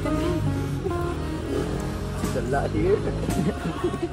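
Background music with a voice over it, at a steady moderate level.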